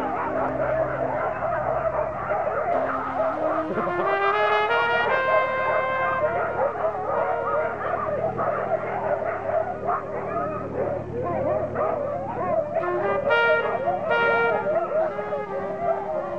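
A team of harnessed sled dogs barking and yelping together in a continuous din. Music with a slow melody of held notes plays over it.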